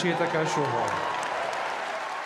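A large audience applauding in a big hall, starting over the tail of a man's words.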